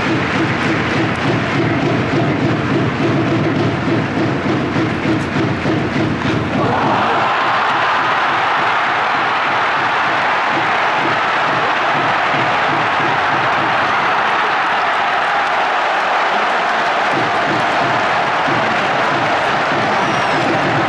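Ballpark crowd in a domed stadium: a rhythmic cheering song with clapping, then about six and a half seconds in the sound switches abruptly to steady, loud crowd applause as the game-tying hit drives in runs.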